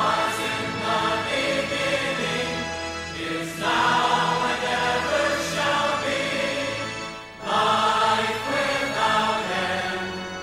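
A choir singing slow, sustained devotional music. New phrases come in about three and a half seconds in and again past seven seconds.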